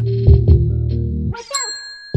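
Background music with a steady beat that cuts out about two-thirds of the way in. A short swoosh and a bright bell-like notification ding follow, the ding ringing on: a subscribe-animation sound effect for the notification bell being clicked.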